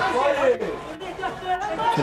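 Voices talking, several at once; no other sound stands out.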